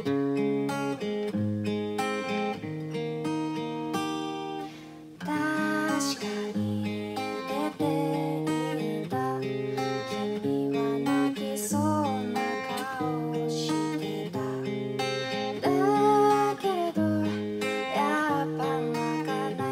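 Cutaway acoustic guitar with a capo, strummed in a steady repeating chord pattern; a woman's voice comes in singing in Japanese over it about five seconds in, after a brief drop in the playing.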